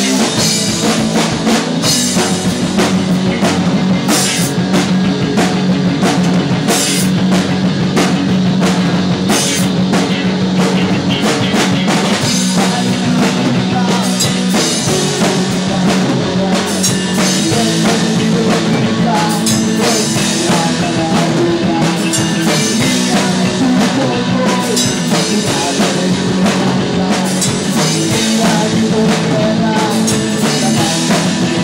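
A rock band playing live: electric guitar, bass guitar and a drum kit, a steady beat over a stepping bass line, with no singing.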